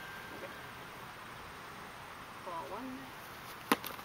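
Quiet outdoor background with a faint distant voice in the middle, then a single sharp knock near the end as a child swings a plastic bat at a pitch.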